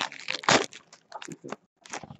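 Trading cards and their packaging being handled: a quick series of crisp clicks and rustles as cards are flipped and slid, the loudest about half a second in.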